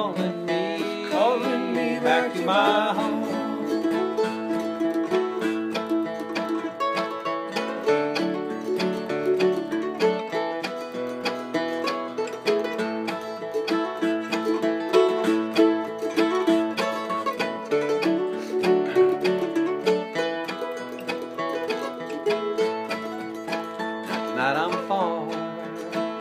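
Instrumental break of a bluegrass song: acoustic guitar and other plucked strings picking the melody at a lively pace. A sung line trails off about two seconds in, and singing comes back in near the end.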